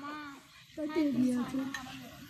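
Speech: a woman's voice talking briefly, with a short pause in the middle.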